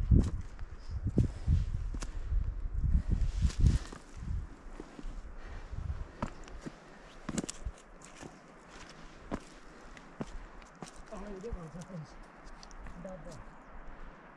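Footsteps on a rocky mountain trail, scattered sharp steps and crunches over rock, dry grass and twigs. A heavy low rumble on the microphone fills the first four seconds.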